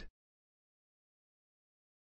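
Near silence: a blank, soundless track, with only the last instant of a synthesized voice at the very start.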